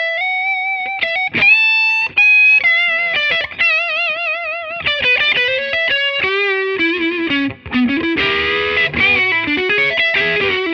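Gibson Les Paul Standard electric guitar with humbucking pickups, played through an amplifier: a melodic lead line of sustained single notes with string bends and wide vibrato, turning into a busier run of notes near the end.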